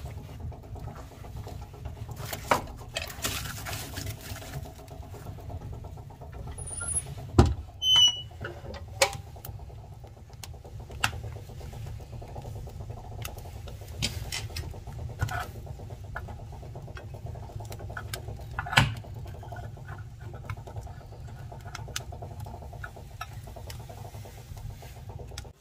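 Wood burning in a boiler firebox, crackling with scattered pops and a few sharp snaps over a steady low rumble.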